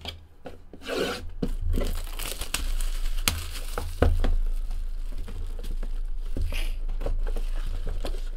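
Plastic shrink wrap being torn and crinkled off a cardboard trading-card hobby box, with irregular rustles and scattered sharp clicks. The loudest is a single snap about halfway through. A low steady hum runs underneath.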